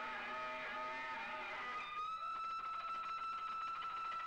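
Live electric guitar solo, unaccompanied: a run of sustained notes, then about two seconds in a single high note held steadily.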